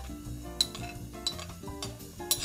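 Background music with a few light clinks as a patterned bowl knocks against the rim of a glass mixing bowl while dry ingredients are tipped in.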